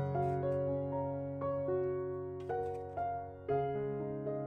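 Soft background piano music: a slow line of notes and chords, each struck and left to ring, with new notes coming roughly every half second to a second.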